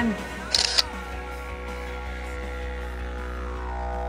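A camera shutter sound clicks twice in quick succession about half a second in, then a didgeridoo drone holds steady.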